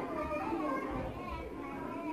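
Children's voices chattering indistinctly in a room, high-pitched and without clear words.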